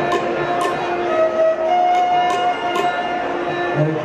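A bowed string instrument plays a slow melody of long held notes that glide between pitches. Light high clicks from small percussion sound along with it at an uneven beat.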